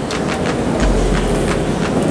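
Audience clapping: a quick, uneven run of sharp claps, several a second, over a steady low hum.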